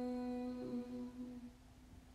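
A voice holding one long hummed chant note at a steady pitch, which wavers and dies away about a second and a half in.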